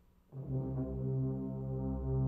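Tuba and euphonium ensemble entering together after a brief silence, about a third of a second in, on a low sustained chord held steady.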